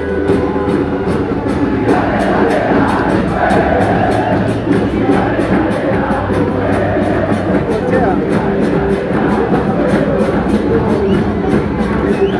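A football supporters' band of large bass drums (bombos) and trumpets playing a steady, fast beat with held horn notes, with the crowd of fans chanting along.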